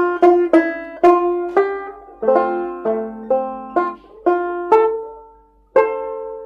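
Banjo playing a melody in plucked single notes and chords, each note sharp at the start and quickly fading. After a brief pause, the phrase ends on a long ringing note near the end.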